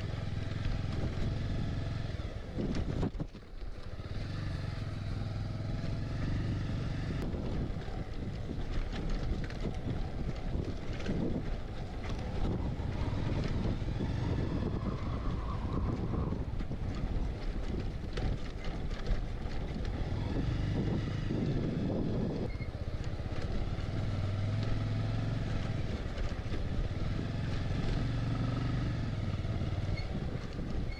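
Motorcycle engine running at steady, low revs while the bike rides a rough gravel track. The sound drops away briefly about three seconds in.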